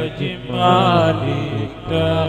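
Male voice chanting an Islamic religious song in a wavering, ornamented melody, with a short break just after the start and another near the end.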